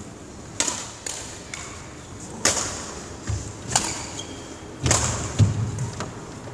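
Badminton rally: five or six sharp cracks of a shuttlecock struck by racket strings, about a second apart, with dull thuds of footfalls on the wooden court floor, the loudest near the end.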